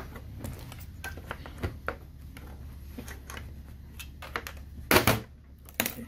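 Plastic snap-fit clips of a Lenovo ThinkCentre Edge 91z all-in-one's back cover clicking as the cover is worked loose by hand, with a louder snap about five seconds in.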